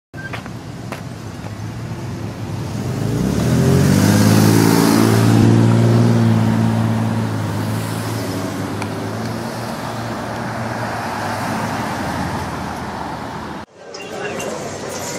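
A motor vehicle passing close by: its engine note rises in pitch as it comes in about three seconds in, is loudest for a few seconds, then eases into a steadier traffic hum. The sound cuts off abruptly near the end.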